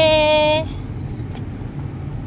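A long, held shouted vowel breaks off about half a second in, leaving the steady low rumble of the vehicle's engine and tyres heard from inside the cab.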